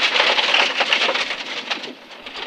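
Loose gravel spraying and rattling against the underside and wheel arches of a rally car at speed on a gravel stage: a dense hiss of tyres on stones with many small ticks. It eases off near the end.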